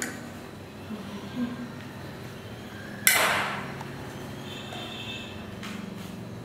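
A dish clattering once, sharply, about three seconds in, with a short ringing tail.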